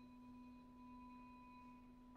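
A string bow drawn across a tuned metal percussion bar, sustaining one soft, steady, pure-toned note.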